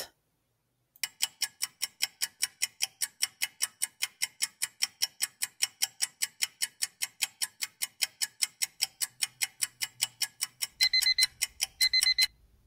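Countdown timer sound effect: a clock ticking steadily at about four ticks a second, then an electronic alarm beeping in quick repeated pulses near the end as the timer reaches zero.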